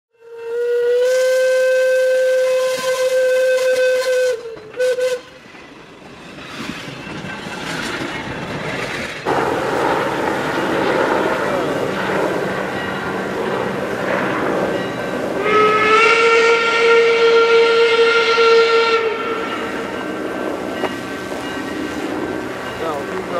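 Steam locomotive whistles from an approaching doubleheaded steam train: one long blast, then a short toot, and later a second long blast whose pitch slides up slightly as it opens. Between the blasts a rushing noise grows steadily louder.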